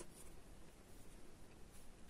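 Near silence: faint rustling and light scratching of yarn being worked on metal knitting needles.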